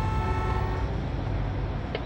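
Freeway traffic jam: a steady low rumble of idling vehicles, with a car horn held down that cuts off a little under a second in.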